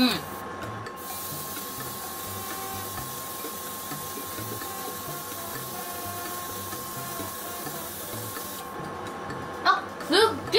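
Airbrush spraying a thinned glitter paint: a steady hiss of air and paint that starts about a second in and stops shortly before the end.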